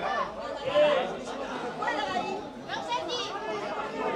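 Several people's voices talking and calling over one another, a jumble of chatter with no clear words.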